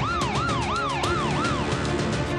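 Emergency-vehicle siren in a fast yelp, about three rising-and-falling sweeps a second, fading out shortly before the end. Underneath runs dramatic theme music with regular percussive hits.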